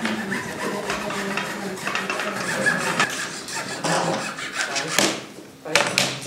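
Indistinct voices with rubbing and scraping handling noises and small clicks, and two sharp clicks near the end.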